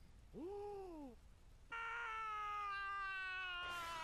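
An anime character's voice from the episode soundtrack, faint under the reaction: a joyful "Woohoo!" shout, a short "woo" that rises and falls, then a long drawn-out "hooo" held for about two seconds and slowly sinking in pitch.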